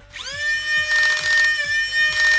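Flywheel motors of a 3D-printed full-auto foam dart blaster (Old Fusion Designs Quik) spinning up with a rising whine, then holding a steady high whine. About a second in, the pusher cycles and a rapid rattling burst of darts is fired through the spinning wheels.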